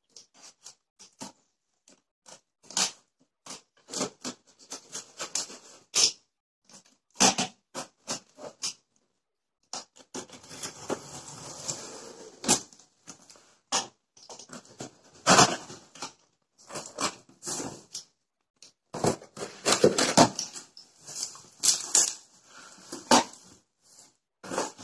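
Utility knife slitting packing tape on a corrugated cardboard box, with a stretch of scratchy slicing about ten seconds in. Many short knocks, taps and scrapes of cardboard flaps and the knife being handled run through it.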